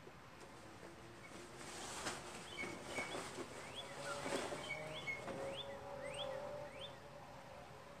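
Small birds chirping faintly in the background: short rising chirps repeated many times, with a few brief whistled notes. A faint steady hum sits under them in the middle.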